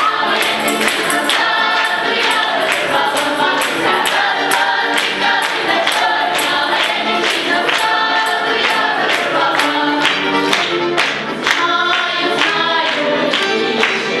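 A mixed choir of young voices sings a lively folk song in chorus, accompanied by accordion, over a steady beat of about two to three strikes a second.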